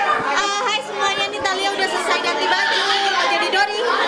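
Several people talking over one another: indistinct chatter, with no clear words.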